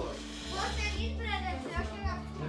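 Several people talking indistinctly over quiet background music.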